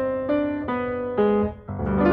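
Piano music: a melody of single notes struck one after another, each fading after it is struck. About a second and a half in the sound briefly drops away, then a fuller chord comes in.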